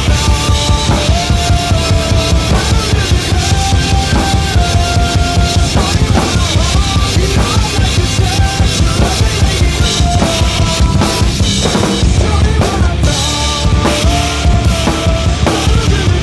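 Acoustic drum kit played at a fast, steady beat, with kick, snare and cymbals, along with a recorded rock track that carries a melody line.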